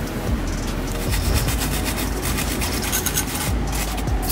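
A wire brush scrubbing rusty steel in rapid, even rasping strokes that grow busier from about a second in.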